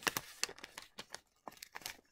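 Brown paper lunch bag crinkling and rustling as it is handled and taped, a run of irregular crackles, thick in the first second and sparser after.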